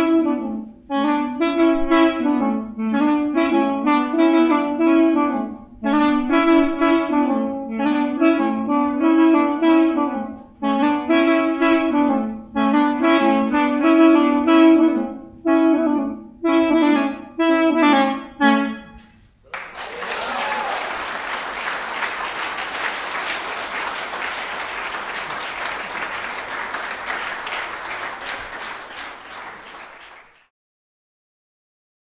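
Duet of two wooden end-blown wind instruments playing a melody in short phrases, which ends about two-thirds of the way through. Audience applause follows and fades out near the end.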